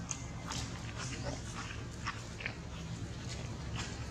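Long-tailed macaques making short, scattered calls and rustling sounds at irregular moments, over a steady low background hum.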